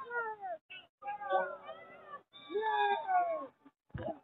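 A boy crying out in pain in long, wavering wails, three in a row with short breaks between them.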